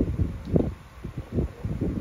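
Wind buffeting a microphone: irregular low thumps and rumble, strongest near the start, about half a second in and again about a second and a half in.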